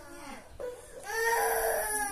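A young child crying in long, high-pitched wails: a short cry about half a second in, then a louder, longer one starting about a second in.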